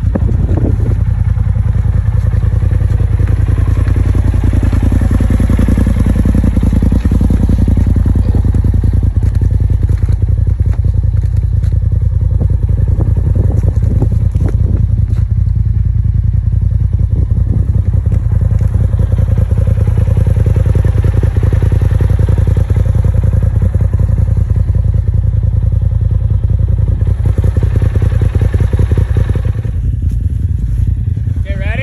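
Polaris RZR side-by-side engine idling, a steady low rumble with no change in pace.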